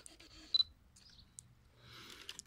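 Fujifilm X-Pro1 mirrorless camera giving one short, high focus-confirmation beep about half a second in as its contrast-detect autofocus locks, followed by a faint click.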